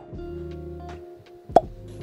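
Soft background music with held notes, cut by a single sharp pop sound effect about one and a half seconds in.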